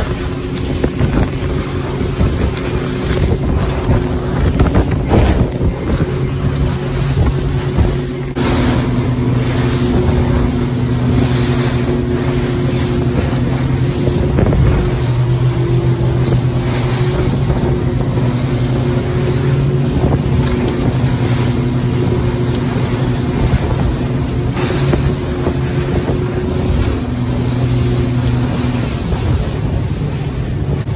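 Motorboat under way at speed: a steady engine hum under loud rushing water and spray along the hull, with wind buffeting the microphone.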